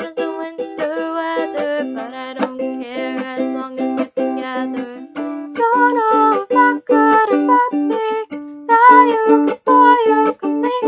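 Ukulele picking a melody of separate plucked notes over a repeating low note. The notes get louder and climb higher from about halfway through.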